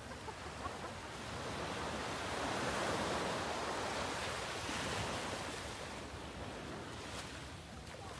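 Small waves breaking and washing up a sandy beach, the surf swelling over the first few seconds and easing off toward the end.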